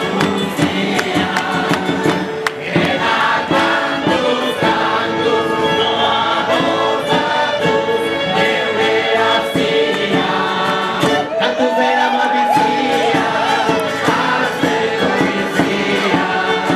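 A crowd of men and women singing a song together in chorus, loud and continuous.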